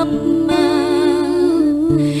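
Background music: a voice singing one long wavering note over steady, held accompaniment, part of an Arabic devotional song.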